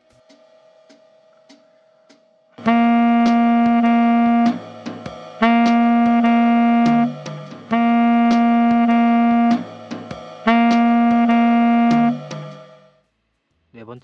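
A tenor saxophone plays a short syncopated jazz phrase over a light ticking beat, two times through. Each long note ends in a brief lower note. This is a delayed-syncopation exercise, with the accented note pushed back half a beat. The beat ticks alone for about two and a half seconds before the saxophone comes in, and the playing stops shortly before the end.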